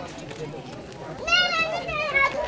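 A child's high-pitched voice calls out briefly about a second and a half in, over faint outdoor background noise.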